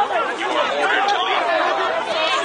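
Crowd of many voices talking over one another at once, a steady din of chatter.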